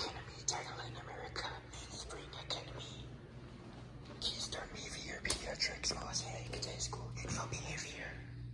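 A person whispering in short breathy bursts, with no clear words, over a low steady hum.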